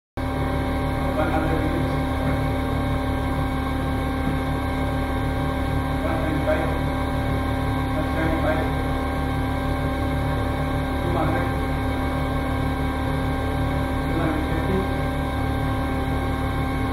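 Steady machine hum made of several constant tones and a low drone, unchanging throughout. Faint voices talk now and then in the background.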